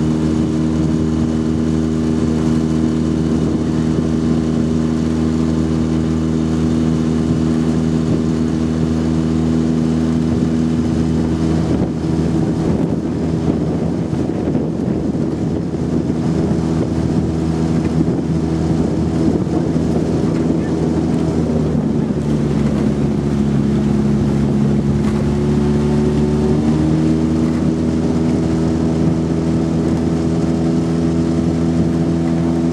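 Motorboat engine running steadily at cruising pace. Its note sags slightly about two-thirds of the way through and picks up again a few seconds before the end.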